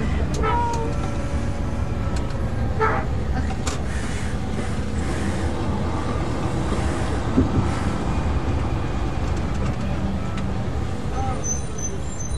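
Tour bus engine and road noise heard from inside the cabin: a steady low rumble as the bus drives through city streets, with a few brief passenger voices over it.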